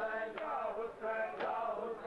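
Male voices chanting a Punjabi noha (mourning lament) in unison, with a sharp beat about once a second from hands striking bare chests in matam.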